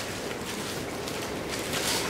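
Soft paper rustling of Bible pages being turned, over a steady hiss.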